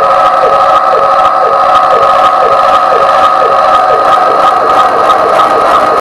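Loud sustained electric guitar amplifier drone or feedback, holding steady pitches with a regular pulse about twice a second, left ringing as the drums stop.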